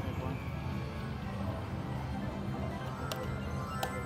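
Huff N' More Puff video slot machine's electronic reel-spin music over the steady din of a casino floor, with two sharp clicks near the end as the spin finishes.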